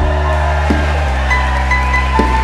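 A live jazz band vamping: held electric-bass-range notes that change pitch about halfway through, under sustained keyboard chords and short high keyboard melody notes, with a soft percussive click about a third of the way in.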